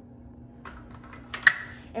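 Light clicks of optical mounts and components being handled on an optical table, then one sharp click about one and a half seconds in.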